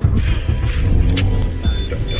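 Toyota 86's flat-four engine running, heard from inside the cabin, with background music over it.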